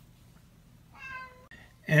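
A domestic cat meowing once, a short call about a second in.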